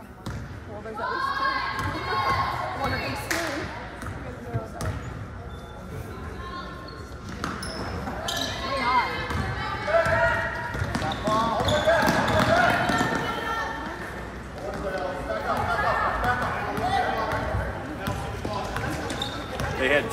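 A basketball dribbling and bouncing on a hardwood gym floor during play, with shouting voices of players and spectators, loudest in the middle of the stretch.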